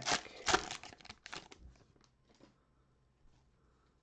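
A foil trading-card pack wrapper being torn open and crinkled by hand: a quick run of sharp crackles that thins out after about a second and a half.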